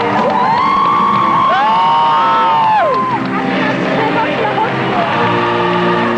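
High voices screaming in long held cries that overlap, rise and fall in pitch, and break off about three seconds in, over stage music. The music carries on alone afterwards.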